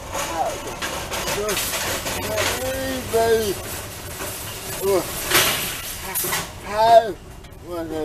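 A man speaking in short phrases, with a brief burst of noise about five seconds in.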